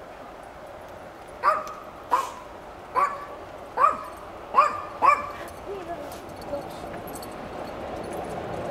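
A dog barks six times in quick succession, then gives a few fainter yips. Behind the barks a steady rumble, fitting the approaching train, grows louder near the end.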